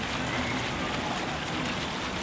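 Steady outdoor background noise, like a hiss, with faint, indistinct voices in it.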